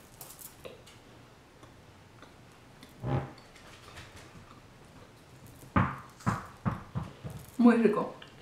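A person chewing a chocolate-covered wafer bar: quiet chewing with small mouth clicks, one louder sound about three seconds in, then several short, sharp mouth smacks over the last two seconds. A brief voiced sound comes at the very end.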